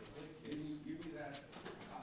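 Quiet, indistinct speech: a voice talking too faintly for the words to be made out.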